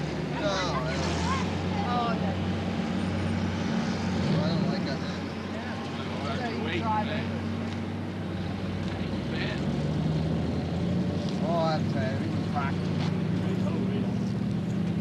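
A steady low engine hum runs throughout, shifting slightly in pitch about two-thirds of the way through. Scattered voices and laughter sound over it.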